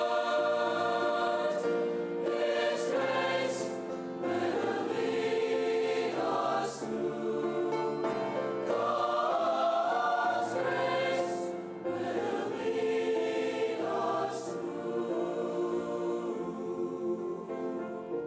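Large mixed choir singing a hymn in harmony, with sustained chords and crisp sibilant consonants, over grand-piano accompaniment. The voices thin out near the end, leaving the piano more exposed.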